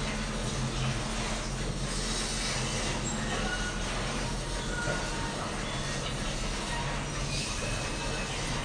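Steady indoor background hum with a hiss, holding an even level throughout, with a few faint brief tones above it.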